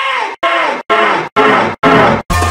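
Audio put through a G-Major-style meme effect, stuttered into short repeated chunks about two a second with tiny gaps between them. Each chunk carries a pitched sound that slides downward.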